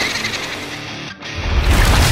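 Short music sting with sound effects for an animated transition. About a second in it briefly drops out, then a loud, noisy swell with heavy bass rises toward the end, like a whoosh accompanying a wipe.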